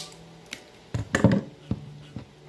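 A sharp snip of pliers-style line cutters cutting through nylon fishing line, followed by a few small clicks and taps as the line and tool are handled.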